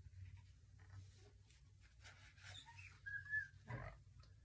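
A brief, faint, high whine from an animal a little after three seconds in, over a low steady hum.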